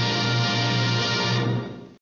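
Orchestral film-score music holding a sustained final chord, which fades away to silence in the last half second.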